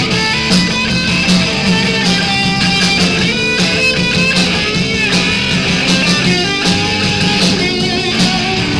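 A live punk rock band playing loud, with electric guitar to the fore, recorded from the room in a small bar.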